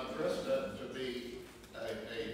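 Speech only: a man talking to a room, pausing briefly near the end.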